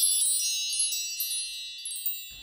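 Wind-chime sound effect: a cluster of high, bell-like tinkling tones that rings on and slowly fades.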